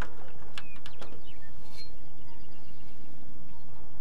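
Steady wind noise on the microphone, with a few faint bird chirps and light clicks in the first couple of seconds.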